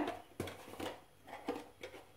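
Quiet room with about four faint, short knocks and noises spread across two seconds.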